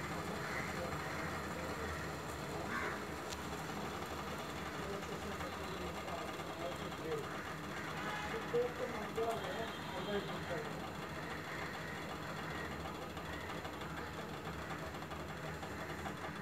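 Steady low hiss of a lit gas stove burner. Faint, indistinct voices are heard in the background about halfway through.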